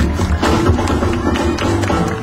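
Live gnawa–jazz fusion band playing loudly, with a steady low bass line under sharp, rapid percussive clacks.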